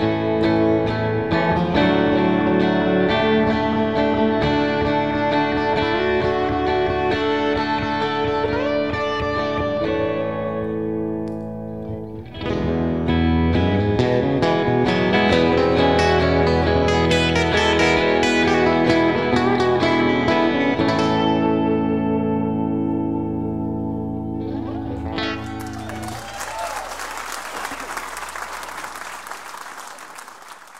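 Two electric guitars playing an instrumental passage, with a brief dip about twelve seconds in. Near the end the music stops and audience applause takes over, fading away.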